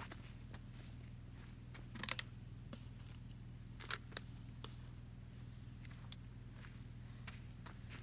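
Footsteps on dry dirt, faint, with a few sharp knocks: a cluster about two seconds in and two more around four seconds in, over a steady low hum. No gunshots.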